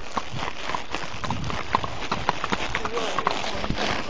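Hoofbeats of ridden horses, a quick run of short irregular strikes over a steady rushing noise.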